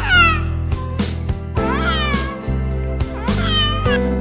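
An infant crying in three short wails, each rising then falling in pitch, over background music with a steady beat.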